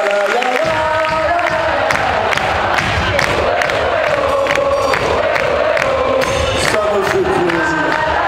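Live band playing an upbeat number while a concert crowd cheers; the full band, with its low end, comes in under a second in.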